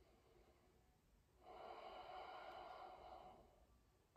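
A man's single faint, drawn-out breath lasting about two seconds and starting a little over a second in, as he breathes slowly in a held yoga stretch. Near silence around it.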